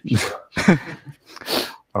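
A man laughing in three short, breathy bursts.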